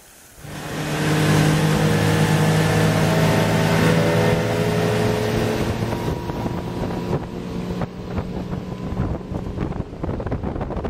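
A 90-horsepower outboard motor running steadily at speed, starting abruptly about half a second in, with water rushing past the hull. Wind buffets the microphone, growing stronger in the second half as the engine tone recedes.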